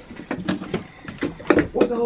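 Indistinct voices with a few short knocks and scuffs of people moving about.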